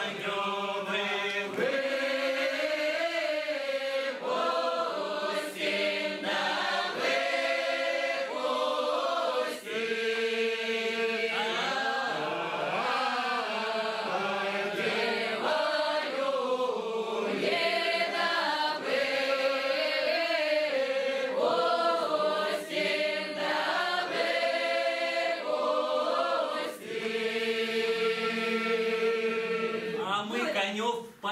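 A mixed group of men's and women's voices singing an unaccompanied Upper Don Cossack round-dance song together, in long held phrases with short breaks between them.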